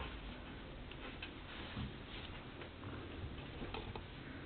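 Faint, irregular clicks of a Siberian husky's teeth on a hard red toy bone as it mouths and chews it.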